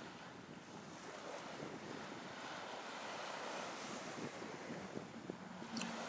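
Faint, steady sea surf as a background bed, swelling slightly and easing off again.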